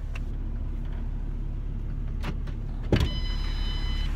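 A Ford Mustang's passenger door is opened from outside: a sharp latch clunk about three seconds in, followed by a steady high electronic door-open warning tone. A low steady hum of the car runs underneath.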